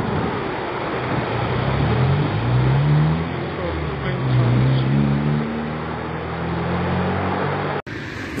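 Engine noise over a steady roar: a low engine note rises in pitch over the first few seconds, then holds. The sound cuts off abruptly near the end.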